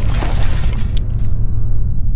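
Cinematic explosion sound effect for a title intro: the tail of a blast, with scattering debris crackling and dying away about a second in over a deep, steady rumble.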